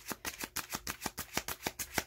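Tarot cards being shuffled by hand: a quick, even run of card flicks, about ten a second.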